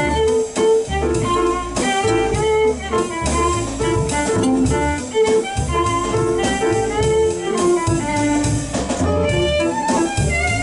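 Live jazz quartet playing a blues: a bowed violin carries the melody over piano, upright bass and drum kit.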